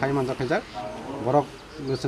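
A man speaking in a local language, in short phrases with brief pauses.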